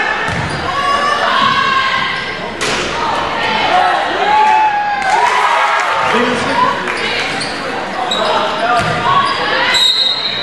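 Basketball game sounds echoing in a gymnasium: the ball bouncing, sneakers squeaking on the hardwood floor and players calling out. Near the end a steady high tone sounds, a referee's whistle blowing to stop play for a call.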